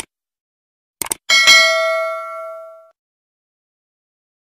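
Subscribe-button animation sound effect: a click, then two quick clicks about a second in. A single bell ding follows and rings out, fading over about a second and a half.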